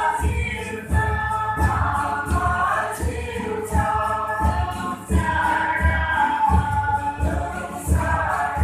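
A group of people singing together in unison, over a steady low thumping beat at about two beats a second.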